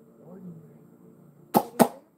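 Two sharp clicks about a quarter second apart near the end, over a faint low hum.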